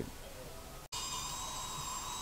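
High-speed surgical drill running and cutting bone, a steady high-pitched whine that starts about a second in.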